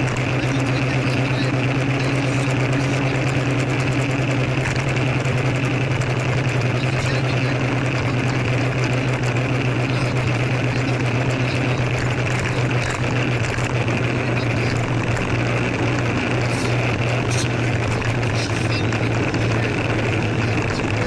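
Small scooter engine running steadily underway, heard from the scooter itself with wind and road noise over it.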